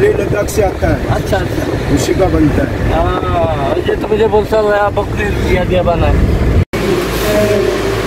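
A man talking over the steady engine and tyre rumble inside a moving Toyota car's cabin. Near the end the sound cuts off sharply and switches to a room with a steady low hum and voices.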